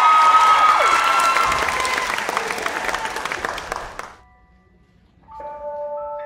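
Audience applauding and cheering, with a few whoops in the first second or so, fading and then cutting off abruptly about four seconds in. After a short quiet gap, music starts near the end with sustained, ringing bell-like notes.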